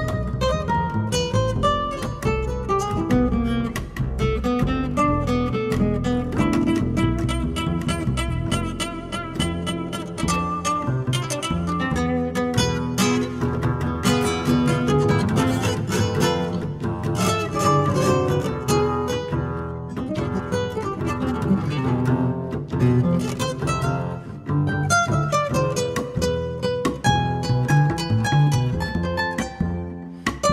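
Jazz guitar and bass playing an instrumental break with no singing, the guitar in quick plucked melodic runs over the bass line.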